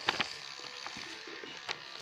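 Handling noise: a couple of light clicks just at the start and another near the end over a faint rustle and hiss, as the phone and objects are moved about.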